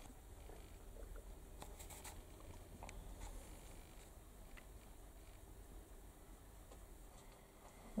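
Near silence: faint room tone with a low steady hum and a few soft clicks in the first few seconds.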